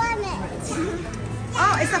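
Young child's high-pitched voice at the very start, then an adult speaking briefly near the end, over a steady low hum.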